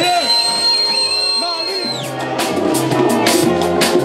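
Live jazz-funk band playing. A voice or horn line slides over a held high note, which stops about halfway through; then the drums and bass kick in with a steady, even beat.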